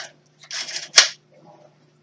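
Carl Angel-5 hand-crank pencil sharpener being handled: a short scrape, then one sharp plastic click about a second in, with faint rustling after.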